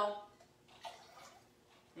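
A short, faint pour of dark cherry juice being measured out, about half a second in.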